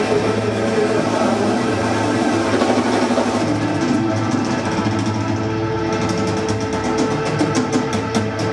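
Live hard rock band on a sustained closing chord: Hammond organ and electric guitar hold long notes while the drummer plays a roll of drum and cymbal hits that gets faster and denser in the second half.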